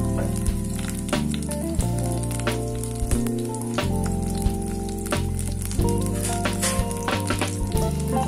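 Bitter gourd slices sizzling as they fry in oil, under background music with a steady beat.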